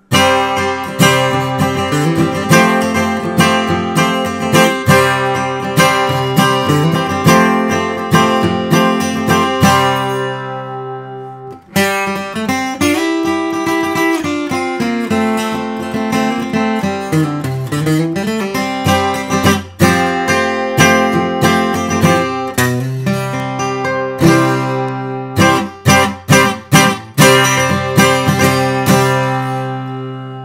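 Martin 1937 Authentic Aged D-28 dreadnought acoustic guitar, torrefied Adirondack spruce top with Madagascar rosewood back and sides, flatpicked bluegrass-style in the key of C, strummed rhythm mixed with picked notes that ring out. The playing is loud and full, with a brief break about eleven seconds in.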